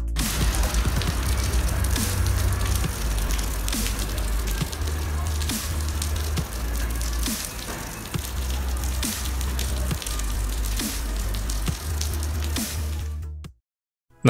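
Background music with a heavy bass, over a steady hiss of rain falling onto an asphalt street. Both stop abruptly near the end.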